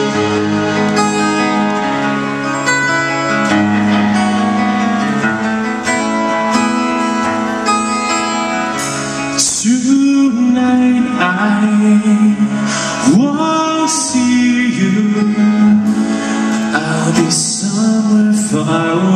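Live rock band playing the opening of a song: guitars, bass and drums, loud and steady. About halfway in a lead melody with bending pitch comes in over the chords.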